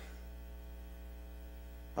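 Steady electrical mains hum through the microphone and sound system, a low constant buzz with a row of even overtones above it.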